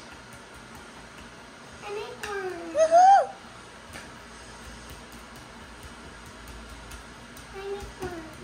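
A young child's high-pitched voice, one short rising-and-falling vocal phrase about two seconds in, with a brief voice again near the end; in between, only quiet room tone.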